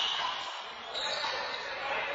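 Handball rally on an indoor court: the rubber ball bouncing amid players' voices, over a steady hiss.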